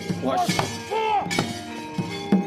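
Gamelan accompaniment for a wayang orang fight scene: held metallophone tones under sharp metallic crashes of the kecrek plates, about half a second in and again near one and a half seconds, with a few short shouts.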